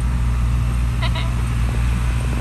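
Truck engine running steadily at low speed, a deep even rumble heard from inside the cab. About a second in come two short, high chirps.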